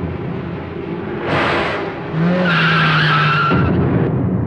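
A car skidding with its tyres screeching for about a second and a half, starting about two seconds in, after a short rushing burst of noise.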